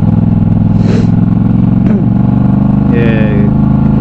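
Yamaha MT-07's parallel-twin engine running steadily through an aftermarket Arashi exhaust while the motorcycle rolls along at low speed in traffic.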